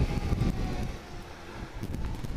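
Kawasaki GTR1400 motorcycle's inline-four engine running while riding in town traffic, with wind rumbling on the microphone. The rumble eases a little about halfway through, then builds again.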